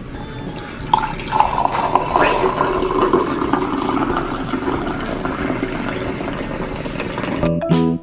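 A frothy milky drink poured in a thin stream from a height into a tall glass, a steady splashing fill that starts about a second in and stops near the end as the glass is full.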